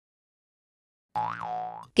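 Silence, then about a second in a short cartoon "boing" sound effect: a springy pitched tone that bends up and back down, lasting under a second.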